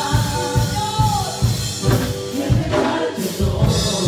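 Church worship team singing a Spanish-language praise song over music with a steady beat; a long held sung note ends about a second in, and the singing carries on.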